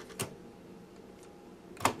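Fisher DD-280 cassette deck's transport buttons being pressed, the mechanism engaging with two sharp clicks about a second and a half apart, the second louder. The transport works quickly after repair.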